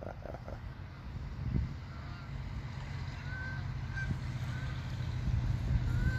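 A steady low rumble that grows louder, with several short, distant honks from geese from about halfway in.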